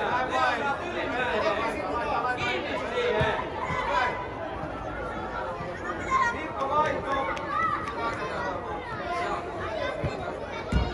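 Chatter and calls of many voices, young children and adults together, in a large indoor football hall.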